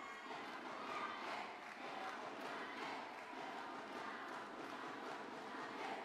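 Indistinct crowd chatter and distant voices in a sports arena, a steady background din with no single sound standing out.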